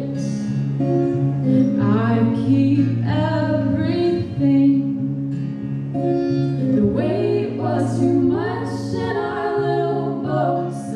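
Live performance of a slow song: female voices singing long held notes over acoustic guitar and a Nord stage keyboard.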